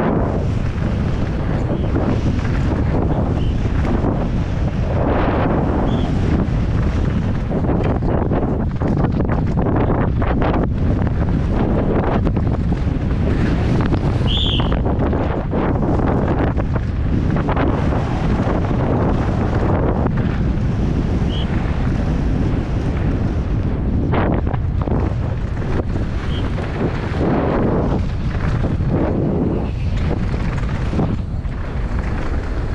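Heavy wind buffeting on the microphone of a downhill mountain bike at speed, with the tyres running over dry dirt and gravel and the bike rattling and knocking over bumps. A few brief high squeaks come through, the clearest about halfway.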